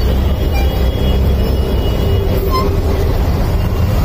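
Heavy rain on a flooded street mixed with nearby vehicle engines running: a loud, steady rush over a deep rumble, with a faint short chirp about two and a half seconds in.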